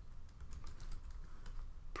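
Typing on a computer keyboard: a quick, uneven run of light key clicks as a line of text is entered.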